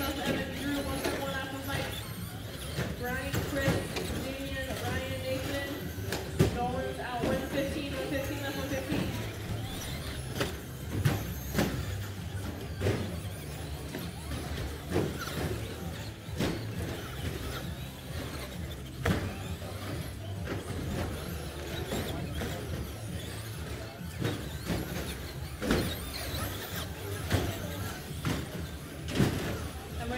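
Electric RC short-course trucks (Traxxas Slash) racing, with irregular sharp knocks and clatters as they land jumps and hit the track, over a steady low hum. Voices are heard in the first several seconds.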